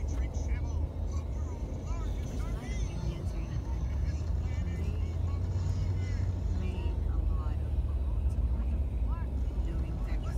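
Steady low rumble of a vehicle's engine and tyres heard from inside the cabin while driving in highway traffic.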